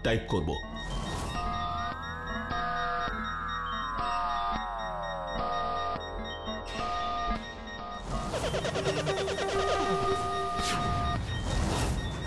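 Electronic computer sound effects: beeps alternating between two pitches about once a second, over a cluster of synthesized tones that slide slowly downward. After about 8 s these give way to a faster, pulsing electronic texture with a click or two near the end, all over background music.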